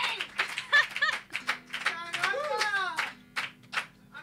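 A small audience clapping, with voices calling out over it; the clapping thins out toward the end.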